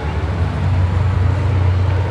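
Steady low rumble of outdoor background noise, with no distinct events.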